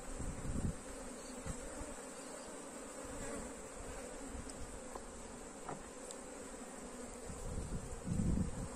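Honey bees buzzing steadily in an open hive as a frame covered in bees is lifted out, with a few faint clicks.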